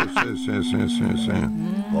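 A long, low moo held for about three and a half seconds, its pitch sinking slowly, heard under overlapping talk.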